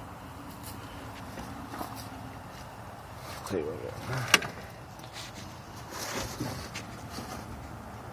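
Quiet background noise with a faint voice about three and a half seconds in and a single sharp click just after it.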